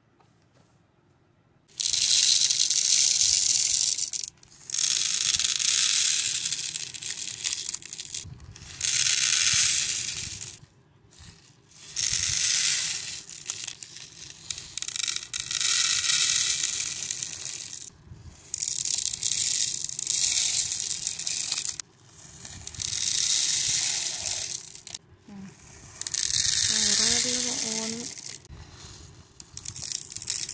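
Small beads poured from plastic bags into the compartments of a clear plastic organizer box, rattling as they spill onto the plastic and onto each other. There are about eight pours of a few seconds each, with short pauses between, after a silent first second or two.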